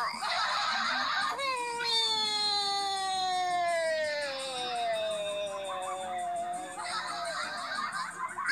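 A long, high-pitched wail that slides slowly down in pitch for about five seconds, starting about a second and a half in; it sounds like a person's voice. Before and after it there is hissing noise.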